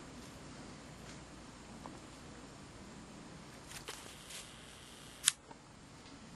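Quiet outdoor background with a few faint ticks, then a single sharp click about five seconds in.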